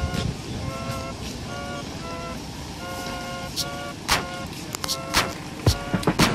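A car's two-tone horn sounding in a quick, uneven run of short toots, one held a little longer partway through, with a few sharp knocks in the second half.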